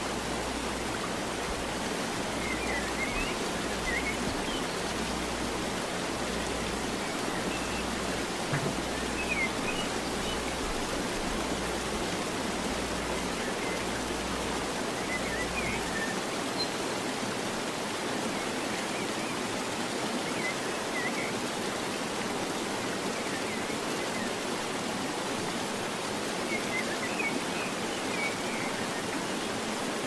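Steady, even hiss of background noise with a few faint, brief high squeaks scattered through it. A low hum underneath stops about halfway through.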